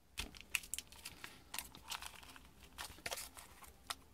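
Cardboard and tissue paper being handled and shifted by hand, giving irregular rustling and crinkling with small clicks and scrapes.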